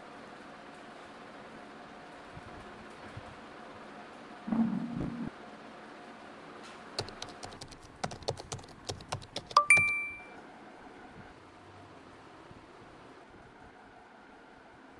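Typing on an Acer laptop keyboard: a quick run of key clicks for about three seconds. Right after the typing, a short two-tone phone notification chime signals an incoming text message. Earlier, about four and a half seconds in, there is a brief soft thump.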